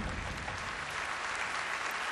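Large concert-hall audience applauding steadily.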